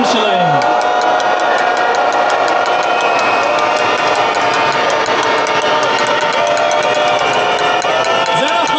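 Large protest crowd cheering and making noise, with many long-held voice-like tones overlapping and a fast, even rhythmic beat.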